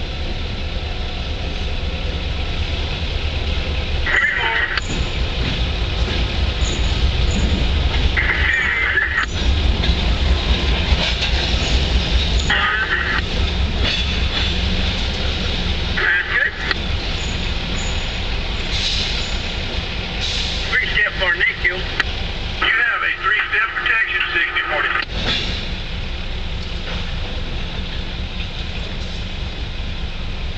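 A slow freight train passing close by: the low rumble of its diesel locomotives, a CSX EMD GP38-2 leading a Conrail GE B20-8, then tank cars and boxcars rolling over the rails. Short higher-pitched bursts of about a second come every few seconds.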